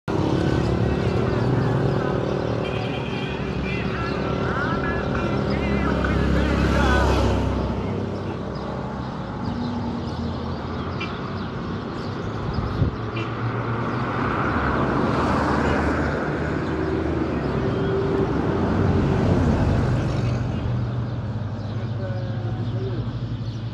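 Road traffic: motor vehicle engines running and passing, with one louder passing vehicle swelling about six seconds in. A single sharp knock comes around the middle, and people's voices talk in the background.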